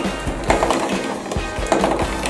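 Background music over the low rolling rumble of marbles running down a cardboard marble-run track.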